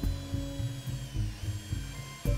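Cordless hand drill running a bit into an aluminium bar, its high motor whine dipping slightly in pitch partway through as it loads up, over background music with a steady low beat.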